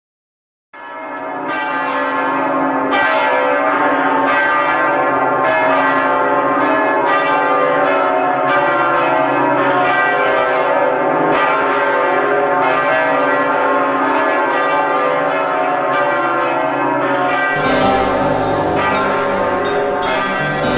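Bells ringing in a slow, regular peal, a strike about every second and a half, starting just under a second in. Near the end the sound changes abruptly to a fuller, brighter passage with quicker strikes.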